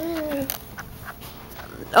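A baby's drawn-out, wavering whine that ends about half a second in, followed by faint rustling and soft knocks as he lies down on the carpet.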